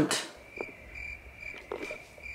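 Faint, high-pitched chirping that repeats at an even pace, a few chirps a second, with a couple of soft clicks.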